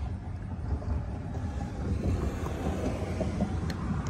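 Uneven low rumble of wind buffeting the microphone, with a few faint handling clicks.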